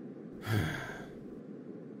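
A man's sigh about half a second in: a short voiced exhale that trails off into breath, over a faint steady hiss.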